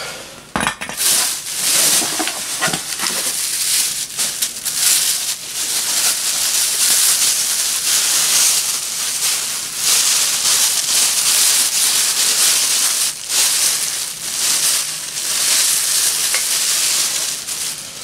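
Thin plastic bags and crumpled newspaper packing rustling and crinkling loudly as hands dig through a cardboard parcel and unwrap parts, with a few brief pauses.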